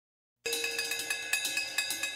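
Opening of a rock song: after a moment of silence, a fast, evenly spaced metallic ticking starts about half a second in, a struck cymbal or bell ringing about six or seven times a second.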